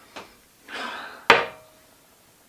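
A short hissing rush of breath, then a single sharp click about a second and a half in, with a brief ring after it.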